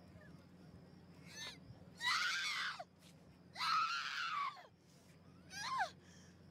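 Young women screaming at each other: a short cry about a second and a half in, then two long, loud shrieks that fall in pitch, and a brief falling shriek near the end.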